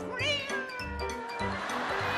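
A cat's meow sound effect: one long call that falls in pitch, over backing music.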